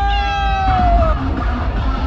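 Loud street-party music with a heavy, constant bass and a long held vocal note that tails off about a second in, over crowd noise.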